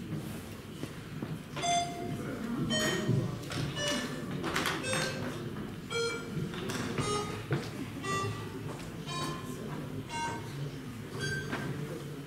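An electronic voting system's signal: a slow string of short electronic notes at changing pitches, one or two a second, sounding while the vote is open. Under it a low murmur of the hall.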